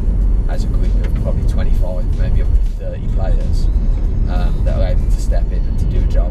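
Steady road and engine rumble inside a moving car's cabin, under a man talking.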